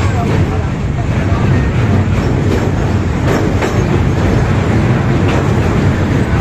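Passenger train running over a steel truss rail bridge, heard from beside the carriage: a loud, steady rumble of wheels on rails, with a few sharp clacks from the track.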